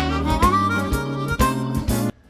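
Background music: a bluesy tune with a harmonica lead, a bass line and a steady beat.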